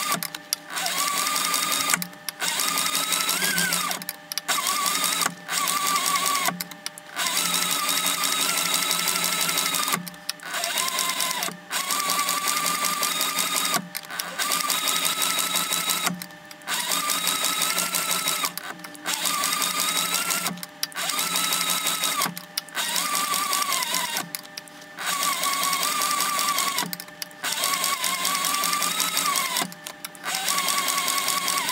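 Industrial leather sewing machine stitching a welt through leather in short runs of one to three seconds. It stops and starts about fourteen times, and its motor whine rises and falls with the sewing speed.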